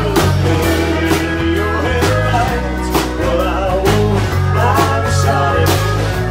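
Live country band playing an upbeat song with guitars, bass and drums, a strong drum hit about once a second and a lead line that slides between notes.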